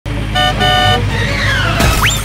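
Horn honking twice, a short toot then a longer one, followed by a falling, whistle-like glide over a steady low rumble.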